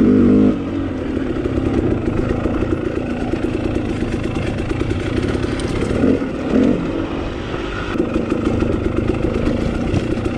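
KTM 300 XC-W TPI two-stroke dirt bike engine running under throttle on the trail, revs rising and falling. A louder burst of throttle comes right at the start, and two quick rev swells come about six seconds in.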